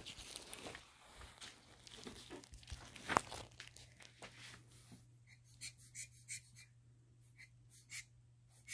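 Handheld squeeze air blower puffing air in a run of short hissy bursts, about three a second, in the second half. Before that, quiet handling rustle with one sharp click.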